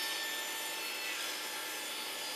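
Table saw ripping a thin strip of wood along its fence: a steady cutting noise with a faint high whine.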